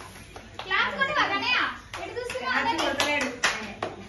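Excited children's voices calling out, with scattered hand clapping in the second half.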